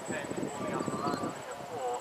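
Hoofbeats of a horse trotting on a sand arena, with people talking over them.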